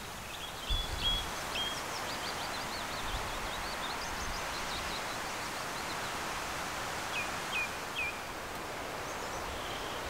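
Woodland ambience: a steady rustling hiss of leaves with small birds singing. There are short chirps near the start, a quick run of notes in the middle, and three short falling notes about seven to eight seconds in.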